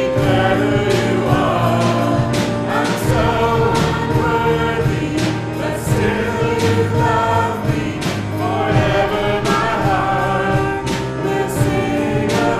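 Church worship team of mixed male and female voices singing a slow praise song into microphones, accompanied by keyboard and a drum kit keeping a steady beat.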